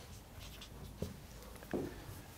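Marker pen writing on a whiteboard: faint scratchy strokes and small taps of the tip against the board.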